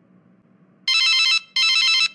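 Telephone ringing: two short warbling rings about half a second each, starting about a second in.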